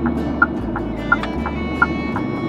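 A car's turn-signal indicator ticking as the car turns at a junction, with a click pair about every 0.7 s, over the low rumble of the engine and road. Background music plays under it.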